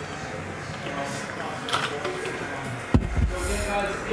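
Background voices, with one sharp thump about three seconds in.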